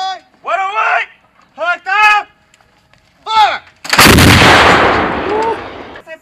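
M777 155 mm towed howitzer firing once about four seconds in: a sudden blast followed by a long rolling rumble that fades over about two seconds. Short shouted calls come before the shot.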